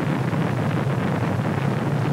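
Steady, loud rumble of Space Shuttle Columbia lifting off, its solid rocket boosters and main engines firing.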